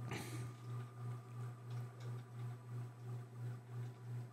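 Faint ticking from the wheel-of-names spinning-wheel animation, over a low hum that pulses evenly about three times a second.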